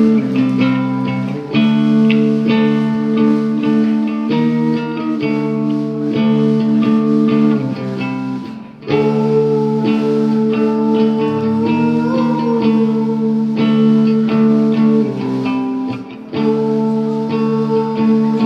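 A live rock band playing, with electric guitars holding sustained, distorted-sounding chords over bass. The sound drops briefly between phrases, most clearly about halfway through and again near the end.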